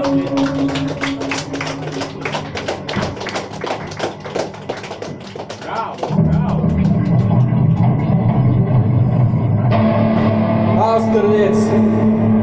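Live post-punk band with electric guitars: quick picked guitar notes at first, then at about six seconds a loud low bass-and-guitar drone comes in and holds. More guitar joins near the end.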